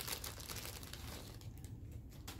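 Faint crinkling and rustling of something being handled off-camera, busiest in the first second and a half, then dying down.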